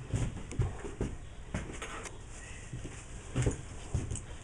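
Scattered light clicks and knocks of screws and a cordless drill being handled against a wooden hive box, with two or three louder taps late on; the drill motor does not run.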